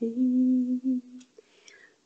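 A woman's voice humming one steady, held note for about a second. It breaks off into a short near-silent pause.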